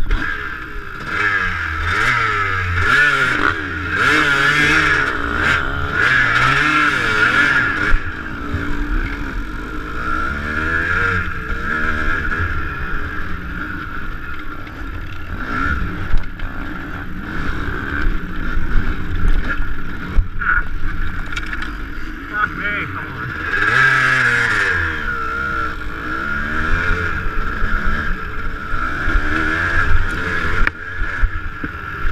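Dirt bike engine being ridden hard, its pitch climbing and falling through the revs and gear changes, with full-throttle pulls near the start and again about 24 seconds in. A few sharp knocks sound over the engine.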